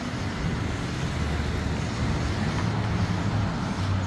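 Road traffic passing: a steady rumble of car engines and tyres.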